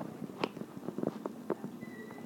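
Faint room sound with a few light, scattered clicks and knocks.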